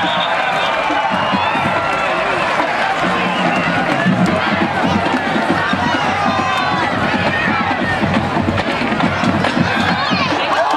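Football game crowd: many voices from the stands and sidelines talking and shouting over one another in a steady din.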